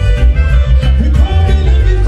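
Loud music with a heavy bass line and a steady beat.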